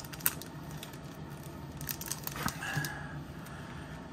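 Thin clear plastic sleeve crinkling and rustling as a trading card in a rigid plastic holder is slid out of it, with a few light clicks of the plastic.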